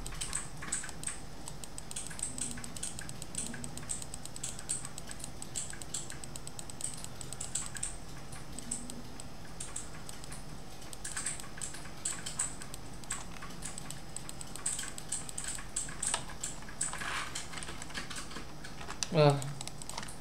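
Light, irregular clicking of a computer keyboard and mouse, in scattered runs.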